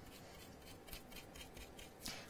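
Faint, light scratching of a dry, stiff paintbrush, its bristles crusted with old paint, dragged over a stencil to work paint outward.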